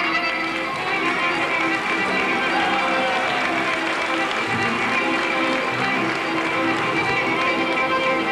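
Folk dance music playing steadily, with the dancers' feet stepping and stamping on the stage.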